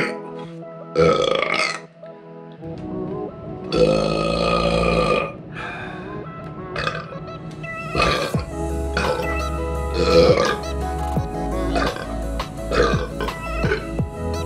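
A man burping over background music, with one long drawn-out burp about four seconds in; the music takes on a steady beat in the second half.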